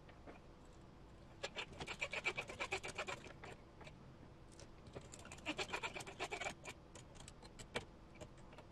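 Hands handling small parts on a workbench: two spells of quick crinkling and clicking, about a second and a half in and again about five seconds in.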